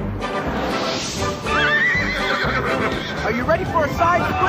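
Music with a horse's hoofbeats and a horse whinnying about a second and a half in.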